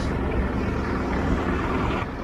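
Steady, low rumbling outdoor noise with no distinct events.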